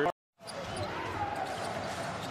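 A brief dead silence at an edit, then the live sound of a basketball game in a near-empty arena: a basketball dribbled on the hardwood court.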